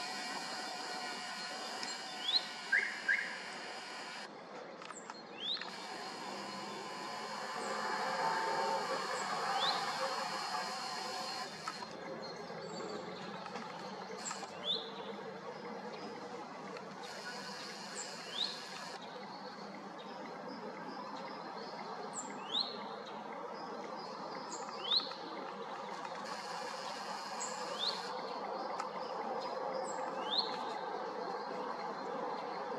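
A small bird gives short, rising chirps every few seconds, over a steady background hum of outdoor noise that swells about eight to ten seconds in.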